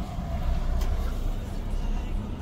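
Steady low rumble of a car's engine and tyres heard from inside the cabin while it drives slowly, with a single faint click a little under a second in.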